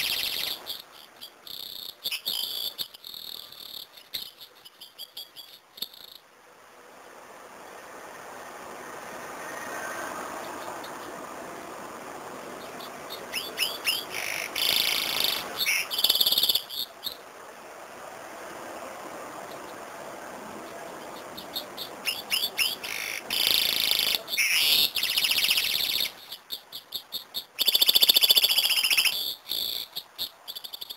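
A caged serin × canary hybrid singing: about four bursts of fast, high, jingling trills, the longest in the first few seconds, with pauses of several seconds between them.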